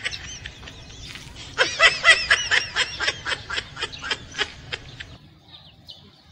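A man laughing in a long run of short, high-pitched "ha"s, about four a second, starting about one and a half seconds in and dying away near the end.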